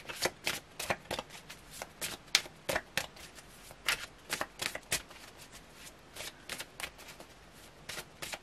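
A tarot deck being shuffled by hand: an irregular run of sharp card slaps and flicks, several a second, with short pauses.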